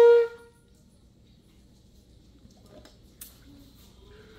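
Trumpet holding a long high note, full and steady, that cuts off about a quarter of a second in. Then the room is nearly quiet, with one faint click about three seconds in.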